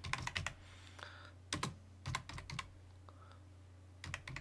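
Computer keyboard typing in a few short runs of keystrokes with pauses between them, over a faint steady low hum.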